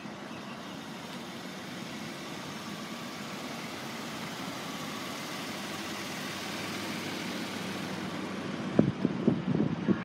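Steady vehicle noise, with a few sharp knocks near the end.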